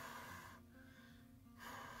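Two breaths close to the microphone, each lasting about a second, the second coming about a second and a half after the first.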